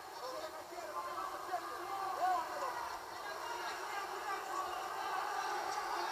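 Indistinct voices and background noise from a televised boxing bout, heard thin and without bass through a TV speaker.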